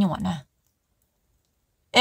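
A voice ends a phrase, then about a second and a half of dead silence, and a held, steady-pitched voiced sound starts abruptly right at the end.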